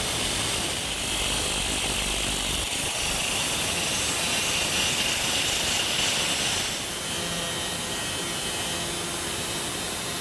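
4-inch angle grinder with a cutoff wheel cutting through a spinning steel electric-motor shaft, a steady high grinding whine. About seven seconds in the sound eases off a little.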